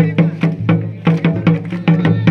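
Double-headed barrel drums, Santali folk drums, beaten by hand in a fast, even rhythm of about five strokes a second, each stroke ringing with a low, pitched boom.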